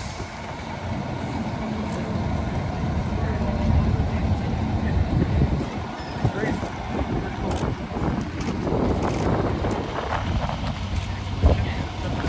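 Parked motor coach's diesel engine idling, a steady low rumble, with one sharp thump near the end.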